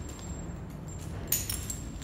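Metal rope-access hardware, carabiners and devices hanging on the rig, clinking together as the gear is handled, with one sharp clink a little over a second in.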